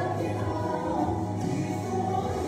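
Women and a girl singing a gospel song into microphones, with musical accompaniment underneath.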